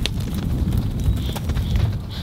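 American bison walking close by, hooves knocking a few times on the dirt, over a steady low rumble.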